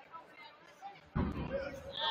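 Indistinct chatter of a few people echoing in a large gym. About a second in, a sudden low thump comes in with a louder voice.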